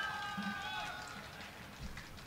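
Faint open-air background noise at a football pitch, with a faint distant voice in the first second that fades away.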